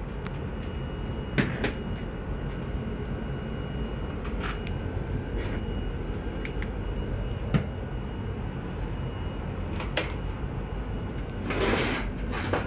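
Steady low room hum with scattered small clicks and knocks as a boxed Funko Pop is handled, and a brief rustle near the end.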